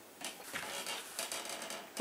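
Faint rustling and scraping with a few light clicks, like handling noise.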